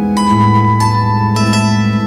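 Zither music: three plucked melody notes, about half a second apart, ringing over a held low bass note and a chordal accompaniment.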